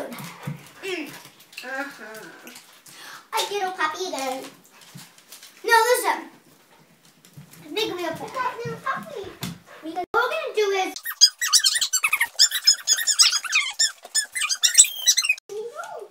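Children's voices in short exclamations, then a rapid run of high-pitched squeaks lasting about four seconds in the second half.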